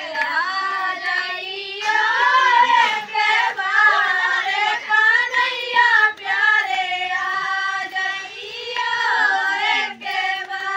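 A group of women and girls singing a Bundeli bhajan (Hindu devotional song) together, unaccompanied by instruments, the children's voices prominent, with hand claps keeping time.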